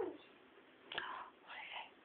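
Two short whispered sounds from a person: one about a second in and another half a second later.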